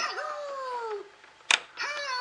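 Electronic sound from a Disney Mickey activity toy's speaker: one long cry falling in pitch for about a second, then a sharp plastic click about a second and a half in as the language slide switch is pushed, with the toy's voice starting up just after.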